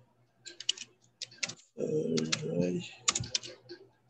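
Computer keyboard typing: quick clusters of keystrokes, broken about halfway through by a second or so of a person's voice.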